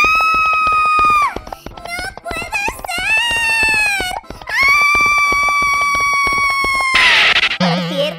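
A high-pitched cartoon voice wailing in three long held cries over background music, the last the longest, in shock at turning into a unicorn. A short burst of noise follows near the end.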